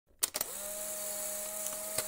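Intro sound effect: a few sharp clicks about a quarter second in, then a steady mechanical whir with hiss and a low hum.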